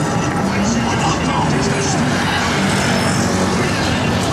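Busy city street at a crossing: a steady din of passing cars and traffic with many pedestrians' voices talking around.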